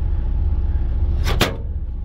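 A microwave oven's hinged door is swung shut and latches with a single sharp clack about a second and a half in.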